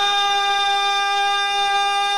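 A male naat reciter holds one long sung note at a steady high pitch, with no instruments behind it.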